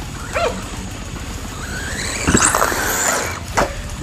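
Electric RC truggy's motor whining and rising steeply in pitch as it accelerates, over a dog whimpering and yelping, with a sharp knock near the end.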